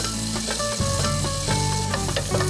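A wooden spoon stirring in a glass pitcher as cold water runs and pours in, with a steady splashing hiss and light clinks against the glass. Soft background music with held notes plays underneath.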